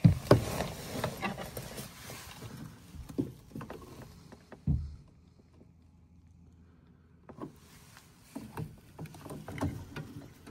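Handling noise from a furnace's rubber condensate drain hose and its clamped fittings being moved by hand: a run of knocks, rubs and rustles, loudest right at the start, then a quiet stretch in the middle before more small knocks near the end.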